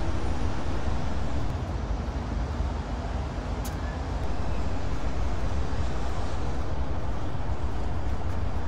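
Steady outdoor city background noise with a heavy low rumble, dipping a little between about two and four seconds in; one faint click comes about midway.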